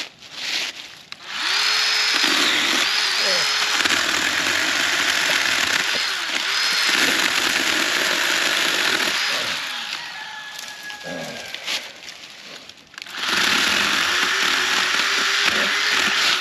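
Small battery-powered saw cutting brush and sapling stems: the electric motor spins up with a rising whine about a second and a half in and runs steadily, its pitch dipping briefly as the blade bites into wood. It runs quieter for a few seconds, stops briefly near the end, then spins up and runs again.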